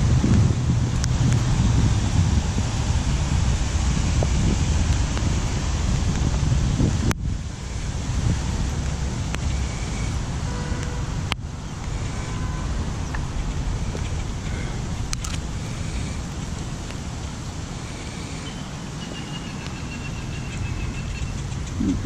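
Steady low rumble of wind buffeting the microphone, mixed with road traffic in the background.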